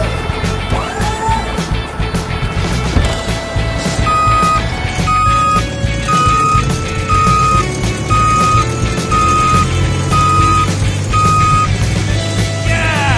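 Background music, with a high beep repeating about once a second from about four seconds in over shifting lower notes. Two rising whistle-like glides come in the first two seconds.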